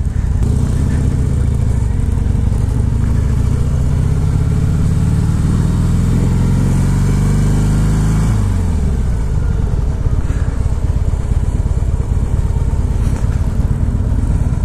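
2015 Harley-Davidson Breakout's 1690 cc (103 cubic inch) air-cooled V-twin pulling the bike away under throttle, its pitch climbing steadily for about eight seconds, then dropping sharply and carrying on at road speed under wind rush.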